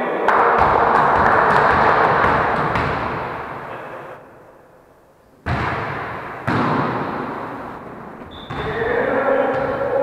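Volleyball hits in a gym hall: sharp thuds of the ball being struck, one about half a second in and three more in the second half. Each one trails off in the hall's echo.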